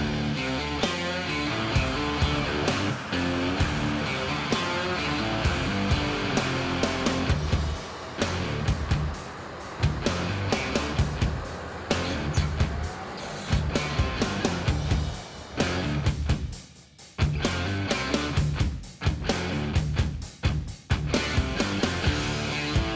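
Background rock music with guitar over a steady beat, briefly thinning out about seventeen seconds in.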